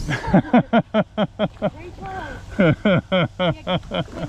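A person laughing in two bursts of quick, rhythmic 'ha-ha' syllables, about five a second, each falling in pitch, with a short break between the bursts.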